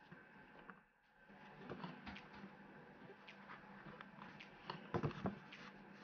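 Faint rustle and scrape of braided cotton cord being pulled and tied into square knots by hand, with scattered soft clicks as the cords are handled. A brief cluster of soft knocks about five seconds in is the loudest part, over a faint steady hum.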